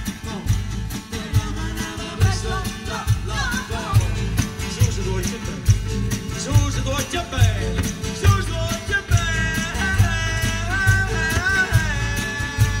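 A live band playing: acoustic guitars over a steady drum beat, with a voice carrying the melody.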